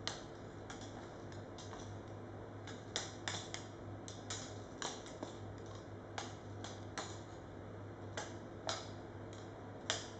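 Irregular sharp clicks and ticks, about two a second, from thin rods swinging beneath hanging rubber bellows and striking one another. A steady low hum runs beneath them.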